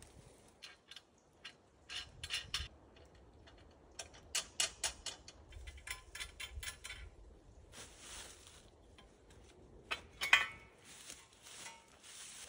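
Metal parts of a climbing tree stand clinking and rattling as they are handled and fitted to the tree, with a flurry of light clicks about four to five seconds in and a sharper metallic clank with a brief ring about ten seconds in.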